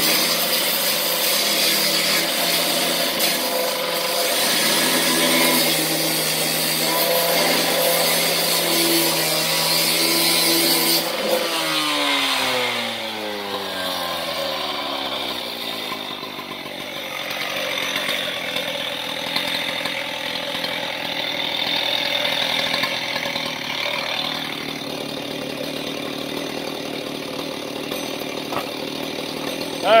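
Gas-powered cut-off saw with an abrasive disc cutting through a rusty steel I-beam at full throttle. About eleven seconds in the throttle is released and the engine and disc wind down, falling in pitch, then the saw keeps running at a lower, steady level.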